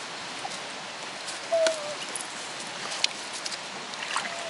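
Water splashing and dripping in a metal bucket as a dog plunges its head in after trout. A short squeak comes about a second and a half in, and a sharp tick near the end.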